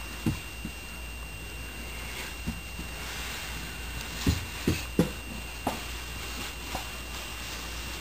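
A toddler handling a small wooden stool on carpet: several short, soft low sounds come a second or so apart, three of them close together about halfway through.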